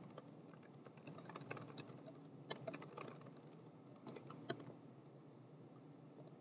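Faint keystrokes on a computer keyboard, typing in short irregular bursts with pauses between them.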